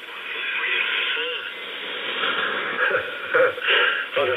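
Amateur radio single-sideband transmission on the 40 m band, heard through a software-defined radio receiver: band noise and hiss with a faint voice beneath it, then a voice coming through more strongly a little over three seconds in.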